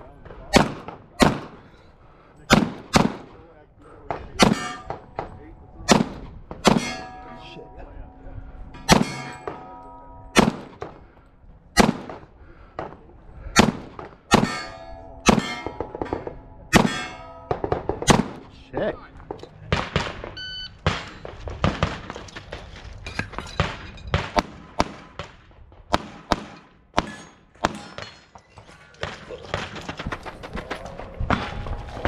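Pistol shots fired in a long course of fire, singly and in pairs about a second apart, coming faster after about twenty seconds. After several of the shots in the middle stretch, steel targets ring on for a second or two.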